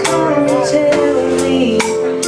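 A young woman singing into a microphone over live instrumental backing, with a steady beat of light percussive taps about twice a second.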